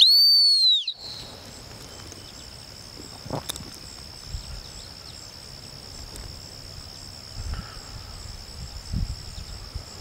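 A dog-training whistle blown once, a single clear blast of about a second that rises slightly and falls away at the end: a signal to the retriever before a hand-signal cast. After it, a steady high-pitched drone of insects.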